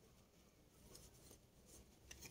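Near silence, with faint rustling of paper oracle cards being handled.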